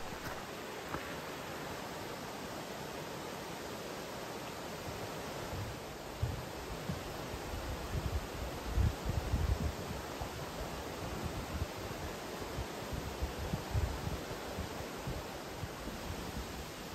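Steady rush of a mountain river, the Río Cares, flowing over rocks below a wooden footbridge. From about six seconds in, irregular low, dull thuds join it, fitting footsteps on the bridge's wooden planks.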